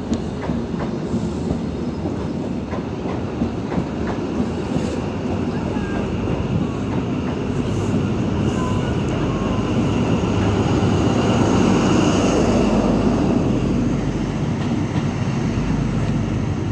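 Blue Pullman passenger train rolling along the platform, its wheels clicking over rail joints with faint wheel squeal. The running noise grows louder in the second half.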